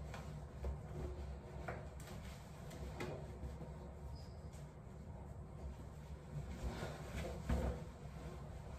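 Soft rustling of a jacket being tugged and adjusted, with a few faint knocks and a low room hum; the loudest knock comes near the end.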